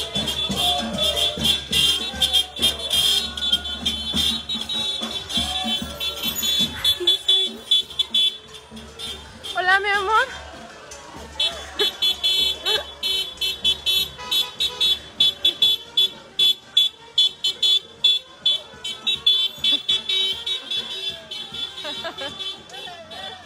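Cimarrona music, the Costa Rican folk band of brass and drums, with a fast, steady, shaker-like beat. The music drops out about eight seconds in and comes back a few seconds later, and a voice calls out in a wavering pitch while it is gone.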